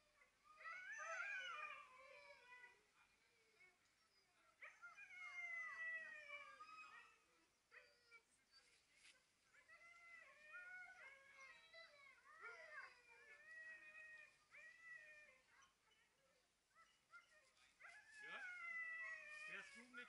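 A team of harnessed sled dogs (Siberian huskies and malamutes) howling and whining at the start line, several voices overlapping in bouts of a few seconds, with short yips between them.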